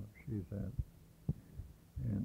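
A man's voice speaks a few words, then two low thumps come about half a second apart, followed by a faint low hum on the tape.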